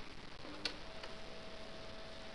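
A single sharp click about half a second in, then a faint steady hum over hiss: the start of playback before a recording of a piano quartet is heard.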